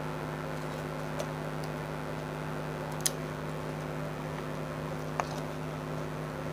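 A steady low electrical hum, with three faint light ticks spread through it as the copper winding wires on the motor stator are handled.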